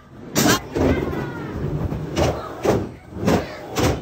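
Skateboard wheels rolling over plywood ramps, with five sharp clacks of the board striking the wood.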